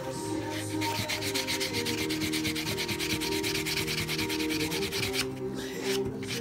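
Nail-file buffer block rasping against a quahog shell (wampum) carving in rapid, even back-and-forth strokes: sanding on the block's coarsest first side. The strokes start about a second in and stop near the end.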